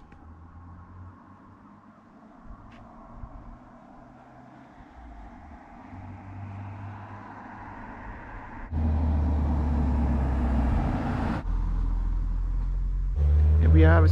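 A motor vehicle's engine running close by with a low, steady hum. It grows slowly louder over the first half, then gets suddenly much louder about two-thirds of the way in.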